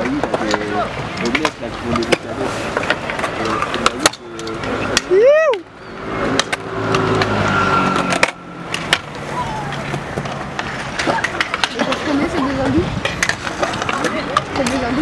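Stunt scooter wheels rolling on a concrete skatepark bowl, with sharp clacks and knocks from the decks and wheels hitting the concrete and coping. Voices and shouts of riders carry over it, including one high rising-and-falling shout about five seconds in.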